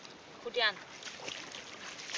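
A short, high call falling steeply in pitch, about half a second in, over the faint rustle and splash of hands searching through weeds in shallow pond water.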